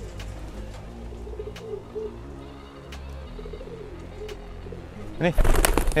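Domestic pigeons cooing in low, repeated calls. About five seconds in, a sudden, much louder burst of noise comes in along with a spoken word.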